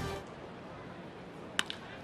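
Faint ballpark crowd murmur, then about one and a half seconds in a single short, sharp crack of a wooden baseball bat meeting a 97 mph pitch and sending it away as a ground ball.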